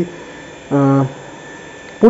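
A man's short held 'uh' of hesitation about a second in, over a faint steady electrical hum.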